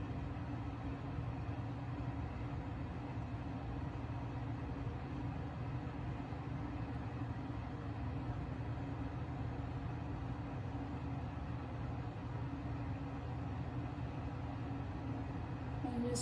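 Steady low hum of background noise with a faint pitched drone, unchanging throughout.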